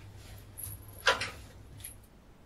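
Footsteps on a hard floor, the loudest a sharp knock about a second in, over a low steady hum.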